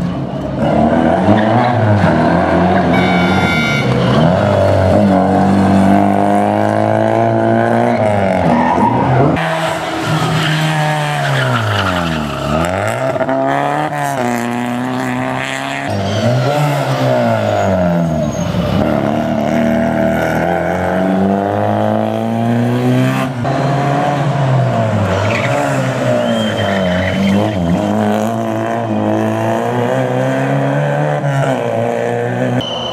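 Rally car engine revving hard, its pitch climbing through each gear and dropping sharply at the shifts and at lifts for corners, over and over as the car is driven flat out.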